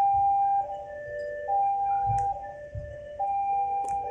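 Electronic level-crossing warning chime sounding a repeating two-tone ding-dong, a high note and a low note alternating a little under once a second. Under it runs the low rumble of passenger coaches rolling past, with two sharp clacks, about halfway and near the end.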